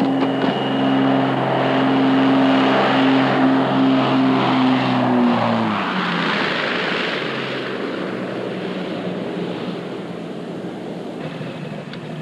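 Twin-engined light aircraft on final approach, its propeller engines droning at a steady pitch. About five seconds in the engine tone drops away as the throttles come back at touchdown. A rushing noise from the landing roll on the sand strip follows and slowly fades.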